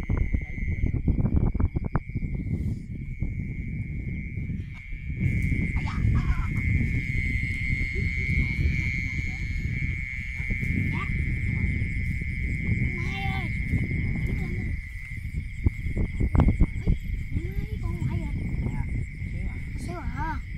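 A steady, unbroken high-pitched chorus of night-calling frogs and insects in a wet field, over the low rumbling and sloshing of someone wading through mud and water with the phone close to the body.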